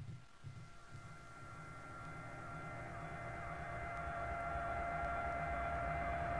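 House or techno track in a breakdown: the kick drum drops out, and sustained synth tones over a low rumble swell gradually louder.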